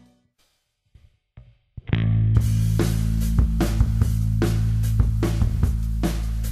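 A live rock band of drum kit, bass guitar and organ fades out to near silence, with a couple of faint short sounds. About two seconds in, it comes back in loud for a new song: a heavy sustained low bass and organ note under drum hits about twice a second.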